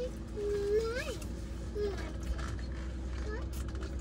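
A person's closed-mouth 'mm' sounds while tasting: one held hum that rises in pitch about a second in, then a few short ones, over a steady low hum.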